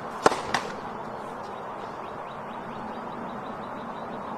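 Tennis ball struck hard, twice in quick succession about a third of a second apart, the first impact louder: racket on ball and the ball's bounce or the return. Two sharp cracks and then nothing more.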